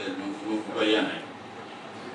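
A man's voice reading a statement in Arabic into microphones, falling into a short pause in the second half.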